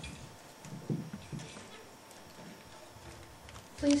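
Soft knocks and thumps of a lectern microphone being handled and adjusted. There are a few of them in the first second and a half, then only quiet room sound.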